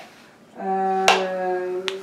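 Sharp click of small wooden dollhouse pieces being handled, about halfway through. Under and around it is a long steady tone held at one pitch, which is the loudest sound.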